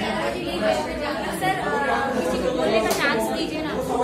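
Indistinct chatter: several people talking over one another, a woman's voice among them.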